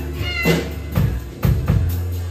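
Live jazz-rock band playing: an upright bass holds low notes under sharp drum-kit hits about every half second, while a violin note slides up and down in pitch, meow-like, near the start.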